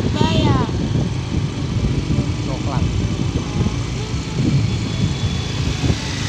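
Steady rumble of street traffic, with cars and a motor scooter passing close by.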